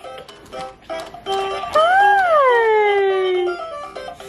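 Electronic toy music from a Fisher-Price baby jumper's activity tray: short stepped notes, then a long sliding tone near the middle that rises and then falls away.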